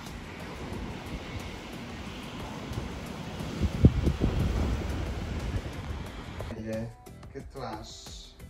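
Steady outdoor rushing noise with wind buffeting the microphone, including one louder bump about four seconds in. Near the end it cuts off and background music begins.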